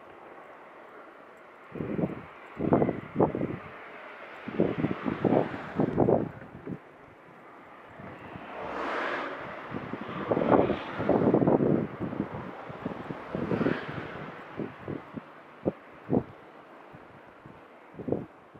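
Wind buffeting the microphone in irregular gusts. Cars go by on the roadway alongside, a smoother swell of tyre and engine noise about halfway through.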